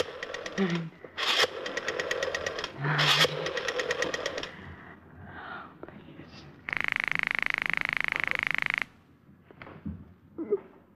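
Radio-drama telephone sound effects: a rotary dial being dialled, a rapid run of clicks with a couple of louder clacks over the first four and a half seconds, then about two seconds in, after a short pause, a single telephone ring near the end.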